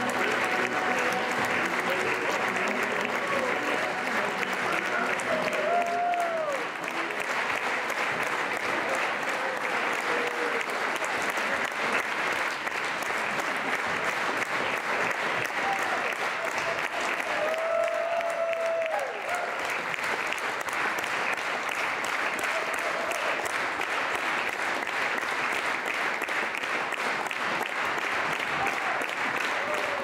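Large audience applauding steadily, a dense continuous clapping, with a couple of voices calling out over it about six and eighteen seconds in.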